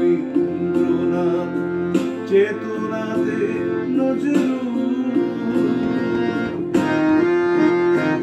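A man singing a Bengali song to his own harmonium, the harmonium's reeds holding sustained chords under his voice.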